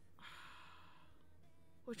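A person's soft sigh: a breathy exhale lasting about a second, starting just after the beginning.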